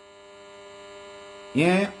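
A steady electrical hum made of many even tones, heard in a pause between a man's words; his voice comes back near the end.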